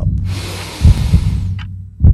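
A low, heartbeat-like throbbing pulse with a rush of hiss over it that starts just after the beginning, lasts about a second and a half, then fades.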